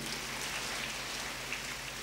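Steady, even background hiss with no distinct events: the room noise of a hall during a pause in speech.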